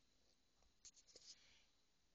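Near silence: faint room tone with a few soft clicks a little under a second in.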